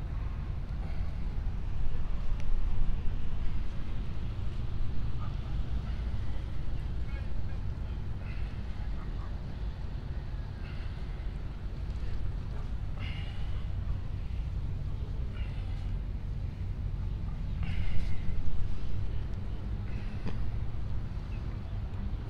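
Steady low rumble of outdoor background noise, with a few short, sharper sounds that rise above it, the loudest about two seconds in and again around eighteen seconds.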